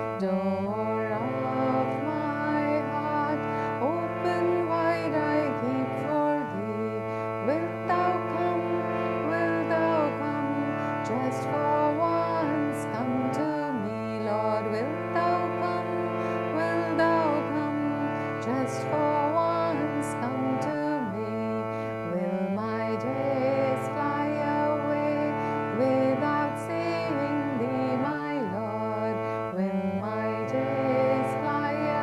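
A woman singing a slow devotional chant, her melody gliding and winding over sustained accompanying chords that change in steps.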